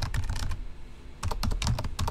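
Typing on a computer keyboard: a quick run of keystrokes, a short pause about half a second in, then another run of keystrokes.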